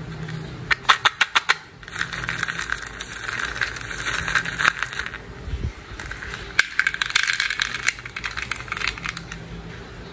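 Small hard-shelled candy-coated chocolates clattering in a plastic cup and then pouring into a plastic toy dump truck bed. There are a few sharp clicks about a second in, followed by two long rattling pours.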